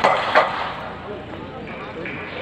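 A hammer thrower's loud, brief yell at the release of the throw, dying away about half a second in.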